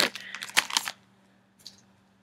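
Clear plastic zip-top bag crinkling as it is handled and put aside, a few sharp crackles in the first second, then near quiet with one faint rustle.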